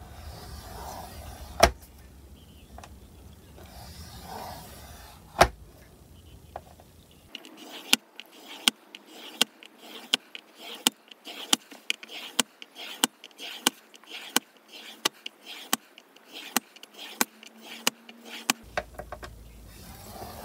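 A scoring tool drawn along the grooves of a Scor-Pal scoring board, scoring lines into paper. A couple of single sharp clicks come first, then from about seven seconds in a fast, even run of sharp clicks, about three a second, as line after line is scored.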